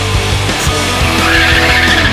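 Loud heavy rock music, with a car's tyres squealing as it corners hard, starting about a second in.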